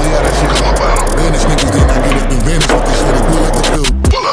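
Skateboard wheels rolling over a concrete floor with sharp clicks, under a hip-hop beat. Everything drops out briefly just before the end.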